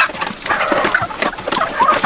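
Flock of Leghorn chickens feeding at a plastic canister feeder: a dense patter of quick pecking taps and rustling, with a few short clucks near the end.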